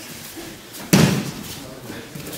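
A single loud thud of a body landing on the dojo mat in an aikido fall, about a second in, with a short ringing tail in the hall.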